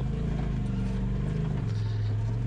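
Polaris RZR Pro XP side-by-side's turbocharged twin-cylinder engine running steadily on a rocky trail, heard from inside the cab; its pitch drops slightly about one and a half seconds in.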